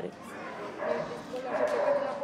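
A woman's choked, tearful voice as she struggles to speak, breathy, with a thin whimpering tone toward the end.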